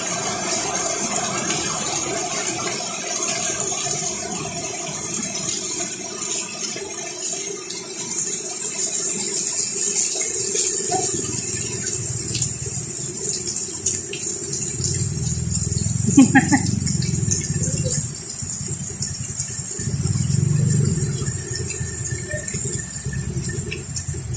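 Heavy rain falling steadily on a street, a constant hiss. Low engine rumble from passing traffic comes in over the rain in the second half.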